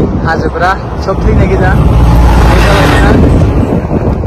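A motor vehicle passing close on the road: a rush of road and engine noise swells to a peak a little past halfway and then eases off, mixed with wind on the microphone. A man speaks briefly at the start.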